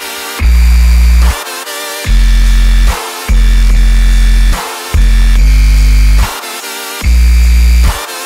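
Electric bass guitar playing deep sub-bass notes under a dubstep track whose own low end has been removed. The bass plays five held notes of about a second each, with short gaps between them.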